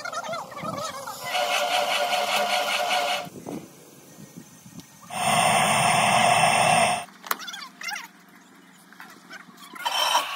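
A run of short workshop sounds cut one after another. The loudest is the steady roar of a foundry melting furnace's burner, which starts suddenly about five seconds in and stops about two seconds later.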